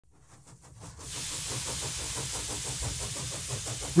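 Model steam plant running: steady steam hiss over a fast, regular beat from the engine. It fades in over the first second.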